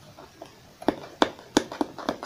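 Hands handling a small cardboard kit box and picking at the tape that holds it shut. About four sharp crackles and taps come from about halfway in.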